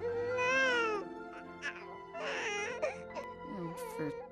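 Soft film-score music with a baby's vocal sounds over it: one long sing-song coo that rises and falls in the first second, then a shorter breathy coo or giggle a little after two seconds.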